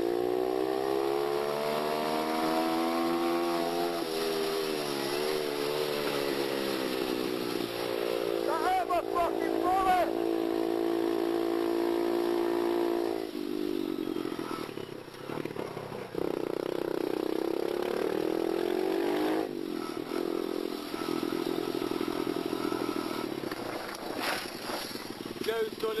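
Small motorcycle engine running under way. Its pitch climbs over the first few seconds, wavers, then holds steady. About thirteen seconds in it drops and runs lower and rougher, with a few brief shouts over it.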